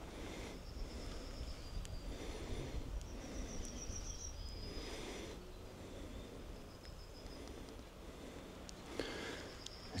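Faint outdoor field ambience: a low steady rumble with thin, high chirps and short trills at intervals, from small birds or insects.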